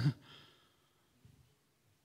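The end of a man's spoken word, then a short, faint breathy exhale into a handheld microphone lasting about half a second, followed by near quiet.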